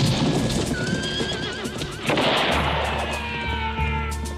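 A horse whinnying, one wavering cry about a second in that falls away, over the trailer's music score. A sudden loud hit swells up about two seconds in and fades into a low drone.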